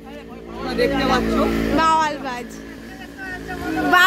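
An engine running close by, a steady low hum that swells about a second in and fades after two seconds, with people talking over it.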